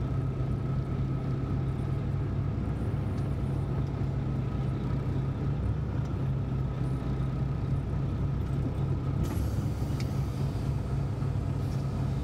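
Semi truck's diesel engine running, heard from inside the cab: a steady low drone with a faint, thin whine above it. A faint hiss joins about nine seconds in.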